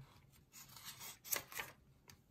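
A page of a hardcover picture book turned by hand: a faint rustle and swish of paper, strongest a little past halfway.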